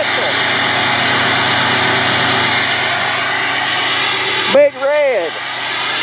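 Pickup truck engine running steadily, loud and close at the tailpipe. About four and a half seconds in the engine sound drops away and a voice calls out in drawn-out, rising-and-falling tones.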